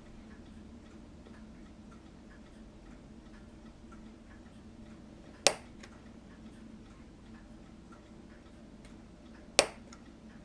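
Two sharp clicks about four seconds apart as a chisel-blade hobby knife is pressed down through a model ship's photo-etched railing, each cut snapping through the metal.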